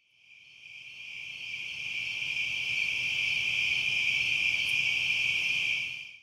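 A chorus of crickets at dusk, a steady high-pitched trill that fades in over the first couple of seconds and drops away at the very end.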